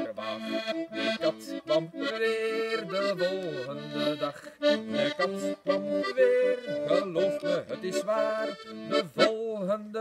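Button accordion playing the tune of a folk song, with steady chords held and changed in steps over a moving melody.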